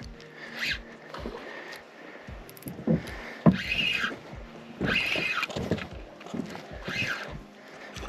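A small redfish splashing in several short bursts at the surface as it is brought in and landed, with low knocks of handling.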